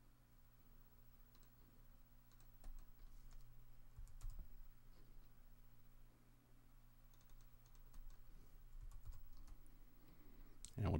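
Faint computer keyboard typing and mouse clicks, scattered in two short clusters, over a low steady hum.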